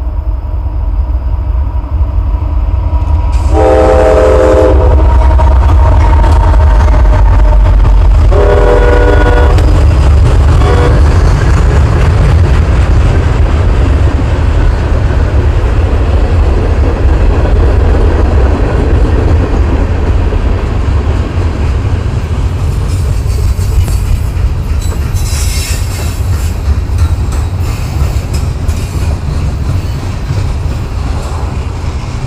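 CSX diesel-hauled freight train passing close by: the lead locomotive sounds its air horn in two blasts of about a second and a half, around four and nine seconds in, then a brief toot. The engine rumble then gives way to the steady rolling of tank cars, a gondola, a flatcar and covered hoppers going by, with scattered wheel clicks near the end.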